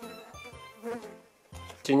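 A pause in a man's speech, holding only a brief murmured hesitation sound, with faint background music underneath.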